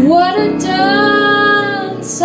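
A woman singing into a microphone, sliding up and then holding one long note, over soft piano accompaniment.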